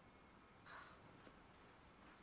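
Near silence: room tone, with one faint, brief scratchy noise a little under a second in.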